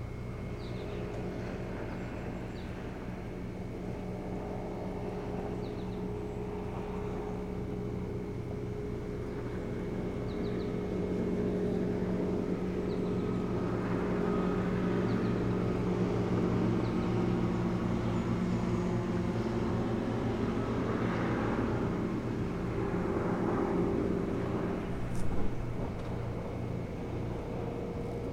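A motorboat engine running steadily, growing louder about ten seconds in and easing back near the end. A few faint high bird chirps come in the first half, and there is one short sharp click near the end.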